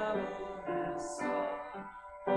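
A hymn sung with piano accompaniment, the voices holding wavering sung notes, with a short break between lines near the end.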